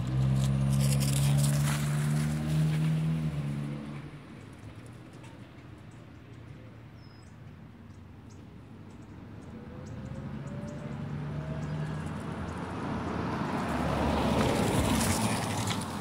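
Street traffic: a vehicle's steady low engine hum for the first few seconds, then a car driving past near the end, its tyre and engine noise swelling to a peak and fading.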